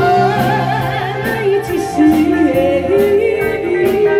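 A woman singing live through a handheld microphone over a recorded backing track, her voice holding and bending long notes above a steady drum beat.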